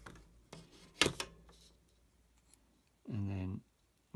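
Drafting instruments, a T-square and a plastic set square, being set in place on a drawing board: a light knock about half a second in and a sharper, louder knock about a second in.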